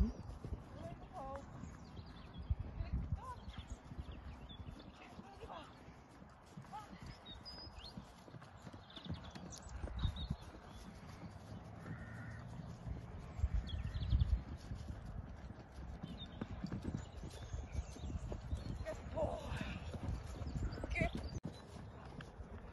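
Horse cantering on grass, its hoofbeats thudding on the turf.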